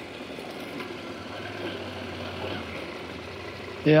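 KTM 890 motorcycle's parallel-twin engine idling steadily, with a low hiss over it.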